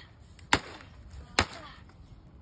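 Two strikes of a steel baseball bat on a broken Sony flat-screen TV's shattered panel, about a second apart, each a sharp crack with a short ringing tail.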